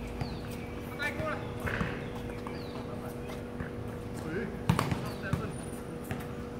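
Basketball bouncing on an outdoor hard court in a pickup game, a few scattered thuds with a quick run of bounces near the end, with players' short calls in between.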